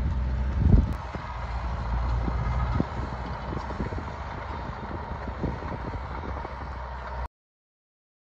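Engine of a brush-cutting machine running steadily as it mulches bracken, with scattered knocks and one loud thump about a second in. The sound cuts off suddenly near the end.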